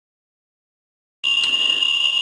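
Silence, then about a second in a Ludlum 12 rate meter's speaker comes in with a steady high-pitched tone: the clicks from a sodium iodide scintillation detector counting about 100,000 counts per minute from a Cs-137 hot particle, run together into one continuous sound.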